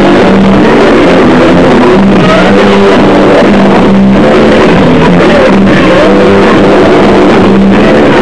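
Live noise-rock band playing loud and heavily distorted, the bass guitar up front with a low note coming back again and again. The recording is overloaded, so the smaller instruments blur into a dense din.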